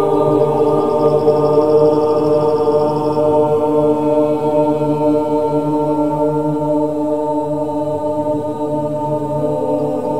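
A mixed choir chanting in long, held notes that sound together as a steady chord, a little softer near the end.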